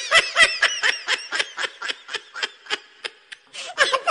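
Someone laughing in quick, high-pitched bursts, about four a second, that start suddenly and slowly weaken.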